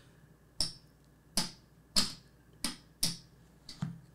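A series of about seven short, sharp clicks, unevenly spaced roughly half a second apart, the last two close together.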